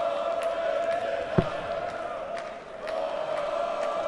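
Arena crowd chanting in unison, a sustained steady sung note that dips briefly past the middle, with one sharp thud about a second and a half in.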